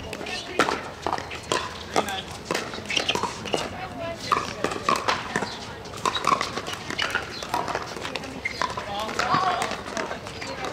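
Pickleball paddles striking a plastic ball: sharp pops in an irregular rally rhythm from several courts at once, some near and some farther off. Players' and spectators' voices run beneath them.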